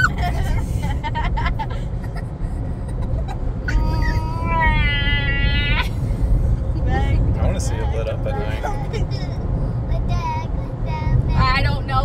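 Steady road rumble inside a car cabin, with a woman's long, wavering high-pitched wail about four seconds in, lasting about two seconds, followed by short wordless vocal sounds.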